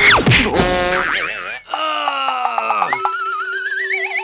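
Cartoon sound effects over background music: a quick downward swoop at the start, a wobbling pitched sound, tones sliding downward, then a warbling tone that climbs slowly near the end.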